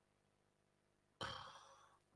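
Near silence, then about a second in a man sighs once into a close microphone: one breath out that fades over about half a second.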